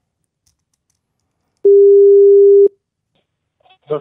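Telephone ringback tone on an outgoing call: a single steady mid-pitched beep, about a second long, starting about one and a half seconds in. This is the ringing signal of the German phone network, heard while the called line rings before it is picked up.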